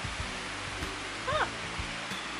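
Steady background hiss, with a person's short spoken "huh" a little over a second in.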